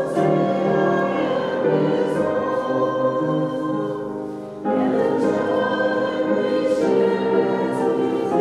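Congregation singing a hymn together in slow, held phrases, one phrase ending and the next beginning a little past halfway.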